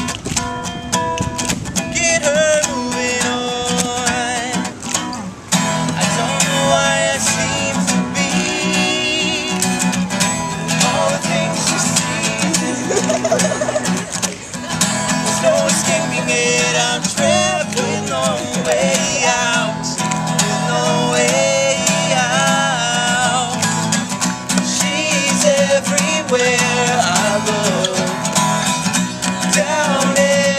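Live acoustic song: a steel-string acoustic guitar strummed steadily while two men sing together.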